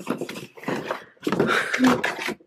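Cardboard play-kit box being opened and handled: a quick run of rustles and scrapes, with a brief voice sound near the end.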